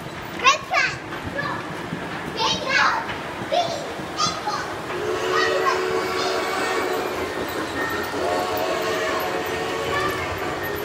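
Children's high-pitched excited calls and squeals echo in a large hall during the first half. For the last few seconds a steady held chord of tones sounds under them.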